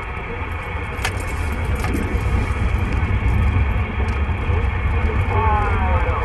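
Received audio from a President Lincoln II+ CB radio on 27.455 MHz upper sideband: steady band noise, hiss over a low rumble, with a faint distant voice coming through near the end.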